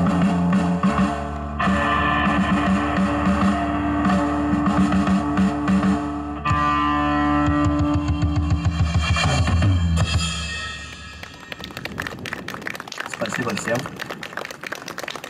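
Live rock band, amplified through PA speakers: distorted electric guitars, bass guitar and drums, with a sung vocal. The song ends about ten to eleven seconds in and it turns much quieter.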